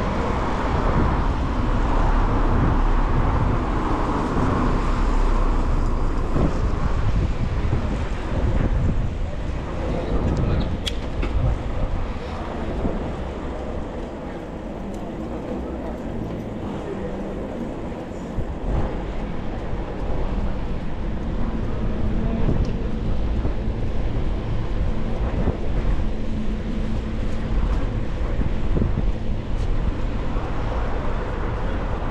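Wind rushing over the microphone of a moving bicycle-mounted action camera, with city traffic and tyres on a wet road beneath it; it eases for a few seconds in the middle.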